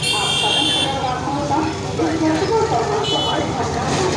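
Street traffic with voices, and a high-pitched vehicle horn sounding in the first second and again briefly about three seconds in.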